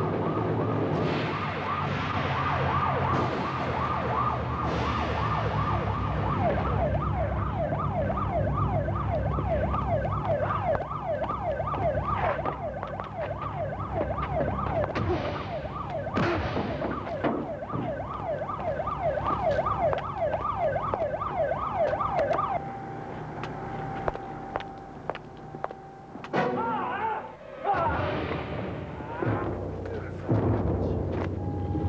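Police siren in a fast yelp, its pitch rising and falling many times a second over a steady low rumble. It cuts off about 22 seconds in, followed by a few sharp knocks and a brief wavering sound near the end.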